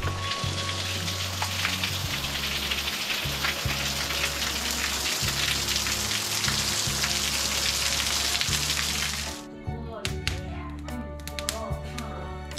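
Heavy rain pouring down in a dense, steady hiss, over background music with a slow, stepping bass line. The rain cuts off about nine seconds in, leaving the music, with sharp crackles from a burning wood fire near the end.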